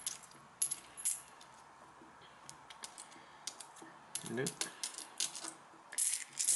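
British one-penny coins clinking against each other as a handful is picked up and turned over by hand, in scattered clusters of quick, light clicks.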